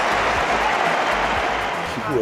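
Tennis crowd applauding a shot: dense, steady clapping that eases slightly near the end.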